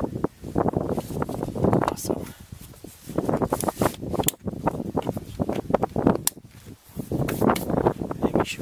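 Hands handling and pressing down the plastic air filter housing lid of a BMW E46 M43 engine, scraping and rattling plastic with a few sharp clicks.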